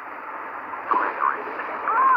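Muffled, steady hiss with a short garbled, warbling voice about a second in: sound made thin and distorted by being re-recorded through several layers of phone screen recording.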